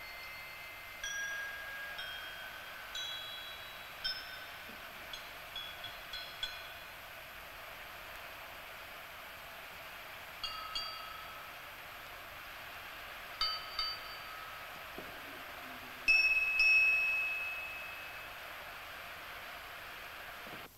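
A row of small hanging bells rung one after another, each giving a clear tone that rings on and fades. Quick strikes come in the first six or seven seconds, a few more after ten seconds, and the loudest, longest-ringing bell sounds about sixteen seconds in.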